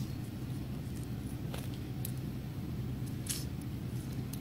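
Faint scratching and rustling of cotton thread being wound tightly around popsicle sticks, with two brief scratchy strokes over a steady low hum.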